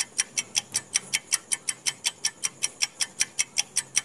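Clock-tick sound effect of a quiz countdown timer: fast, even, sharp ticks at about five a second.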